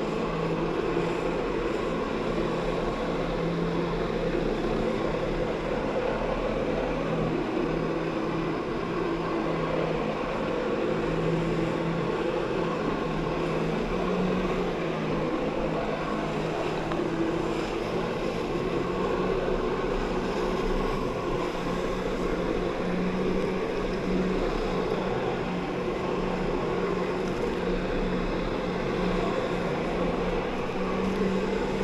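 Personal watercraft engine running hard to drive a Flyboard's water jet through its hose, with water rushing and churning around it; the engine note wavers slightly up and down as the throttle is eased and opened.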